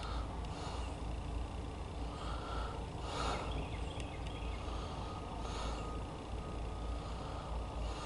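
Distant diesel locomotives of an approaching freight train: a low, steady rumble with a faint hiss. Two short hissing puffs come about three and five and a half seconds in.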